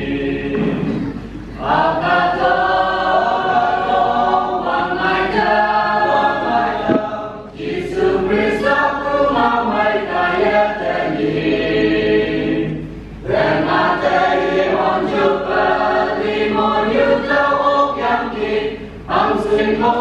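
Mixed choir of men and women singing a hymn in parts, in phrases of about six seconds separated by short breaks.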